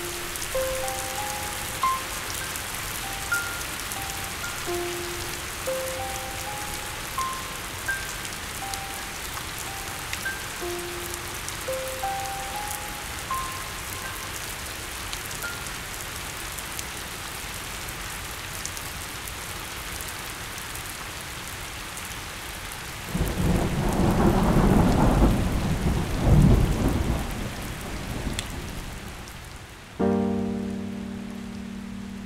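Background music track: sparse single notes, about one a second, over a steady rain-like hiss. The notes stop about 16 seconds in, and a loud low rumble like thunder swells up about 23 seconds in and dies away by about 28 seconds.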